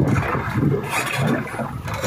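Small fishing boat under way: its engine running low beneath a steady rush of water and wind along the hull.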